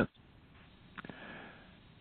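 A faint sniff, a short breath in through the nose, about a second in, starting with a small click.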